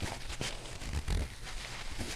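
Quiet rubbing and rustling of a tissue being wiped around the inside of the ear, with a few soft clicks.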